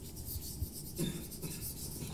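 Chalk writing on a blackboard: a quick run of short scratchy strokes, several a second, as a line of words is written out.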